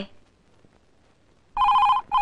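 Near silence, then about one and a half seconds in a telephone starts ringing: a short, warbling two-tone burst of the ring.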